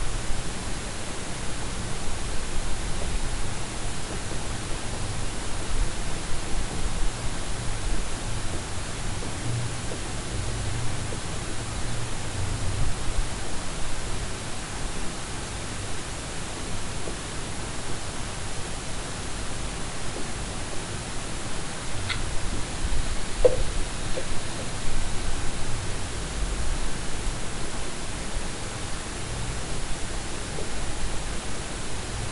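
Steady hiss of background noise on the recording, with two faint, brief small sounds about three-quarters of the way through.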